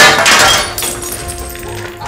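Glass smashed by a golf club strike: a sudden loud crash at the start, then shards tinkling and dying away over about a second, with background music underneath.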